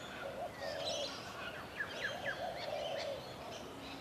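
Wild birds calling at a bushland pond: a run of quick, falling chirps about halfway through, over a lower call that comes and goes.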